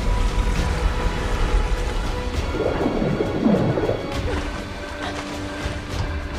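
Film sound of a stormy sea: rushing, splashing water and rain-like noise over a deep rumble, with dramatic music holding steady notes underneath. A louder wavering sound rises and falls in the middle.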